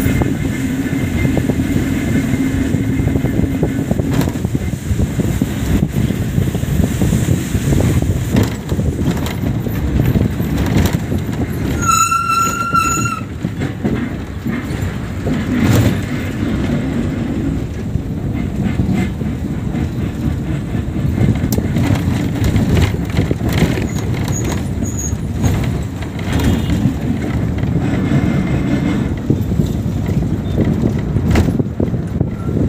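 A bus running on the road, heard from inside the cabin at an open window: a steady engine drone mixed with body rattle and road and wind noise. About twelve seconds in, a vehicle horn sounds once for about a second.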